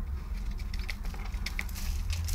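A quail dust-bathing in a plastic tub of sand and straw: scattered small clicks and rustles of grit and straw, getting busier into a short burst of scratching near the end, over a steady low hum.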